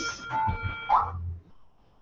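A short laugh over a faint, steady, high-pitched electronic whine of several held tones that lasts about a second. The sound then drops to near silence.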